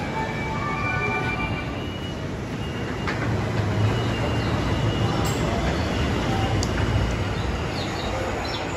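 Low rumble of a Tokyo Metro Ginza Line subway train running through the underground station, swelling about three seconds in and easing near the end, over the steady din of the station.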